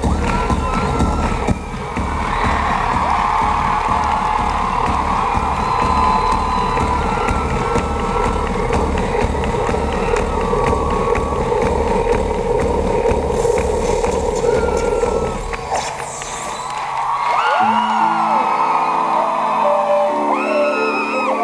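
Live band music heard from within the audience, with a steady pulsing bass beat and some cheering from the crowd. About three quarters of the way through, the bass drops out and a line of stepped held notes comes in.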